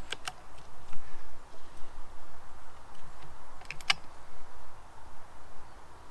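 Sharp mechanical clicks from an FX Impact M3 PCP air rifle being handled between shots, as the action is cycled to chamber the next pellet. There are a few clicks at the start and a sharper double click just before four seconds in, over faint outdoor background hiss.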